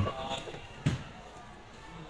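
Plastic front cover of a Panasonic multipoint water heater being eased off its base, with one sharp click about a second in.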